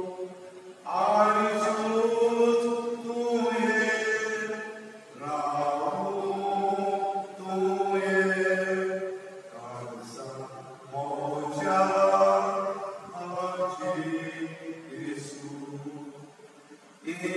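Liturgical chant sung in long held notes, in phrases of a couple of seconds separated by short breaths.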